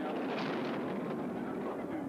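Two-man bobsled speeding down the straightaway at about 118 km/h (73.6 mph), its steel runners on the ice making a steady rushing rumble as it nears and passes close near the end.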